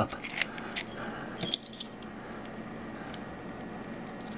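Master Lock Magnum padlock being relocked and handled: a few sharp metal clicks and a key-ring jingle in the first couple of seconds.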